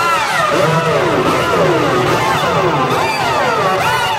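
Fiddle playing long sliding glissandi in a solo, each note sweeping down and back up in pitch about once a second, like a siren.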